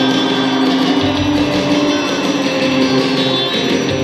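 Live rock band playing, with guitars, loud and continuous.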